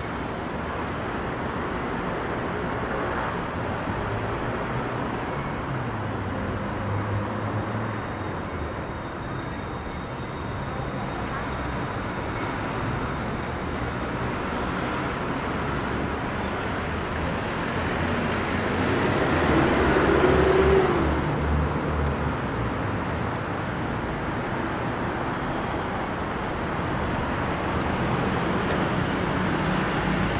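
Steady road traffic rumbling along a busy city street, with one louder vehicle passing close that swells and fades about two-thirds of the way through.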